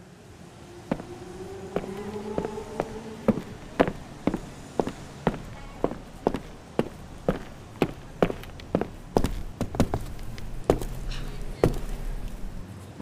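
Footsteps of several people walking on pavement, even strikes about two a second, with a faint rising drone in the first few seconds.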